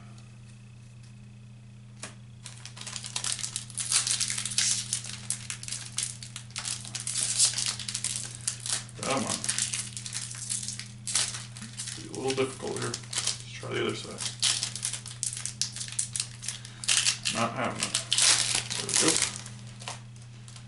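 A baseball card pack wrapper being torn open and crinkled by hand: dense crackling and tearing that starts about two seconds in and runs on almost to the end, with a steady low hum underneath.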